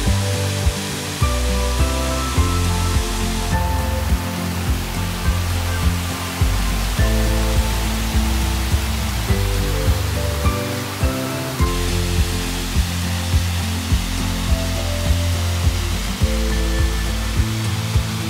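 Background music with a bass line and a steady beat, over the steady rush of a waterfall.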